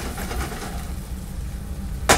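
Steady low hum of a commercial kitchen's extractor hood and gas range, with a faint hiss from the frying pan after the heat has been turned down.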